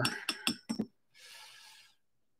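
A paintbrush clinking several times in quick succession against a glass water jar, with a faint ringing, then a brief soft scrubbing as the brush picks up watercolour paint in the palette.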